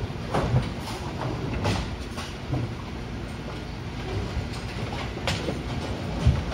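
Brunswick A-2 pinsetter running through its cycle after the first ball: a steady mechanical rumble with a few scattered clicks and clanks as it lifts the standing pin off the deck. The machine runs very quietly.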